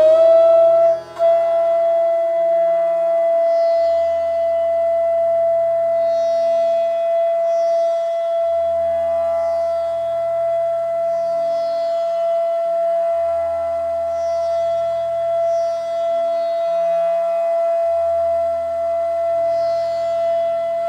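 Bansuri (bamboo transverse flute) holding one long steady note, broken off and re-sounded about a second in, then sustained to near the end.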